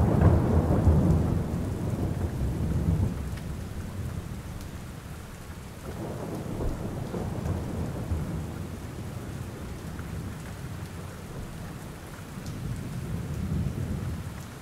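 Steady rain with rolling thunder. A long rumble is loudest in the first few seconds and fades, softer rumbles follow, and it swells again near the end.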